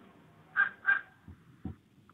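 Felt-tip marker squeaking twice on a whiteboard as a word is written, followed by a couple of faint taps.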